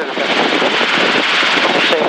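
Steady engine and rotor noise of a light helicopter in cruise flight, heard from inside the cockpit.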